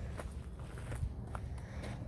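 Faint rumble of a handheld camera being moved about outdoors, with a few light clicks and scuffs spread through it.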